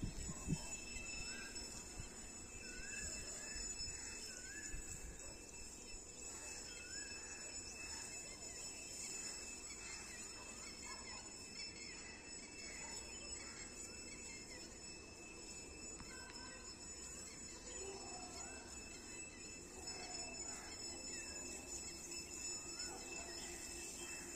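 Faint scattered bird calls, short chirps every second or so, over a steady thin high-pitched drone.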